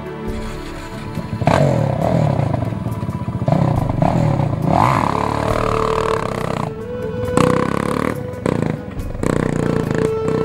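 Sport quad (ATV) engine revving as it accelerates away, climbing in pitch again and again through the gears, from about a second and a half in, with music playing under it.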